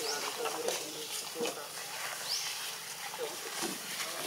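Indistinct voices of people talking in the background, with two short rising high-pitched calls, one at the start and one a little past halfway.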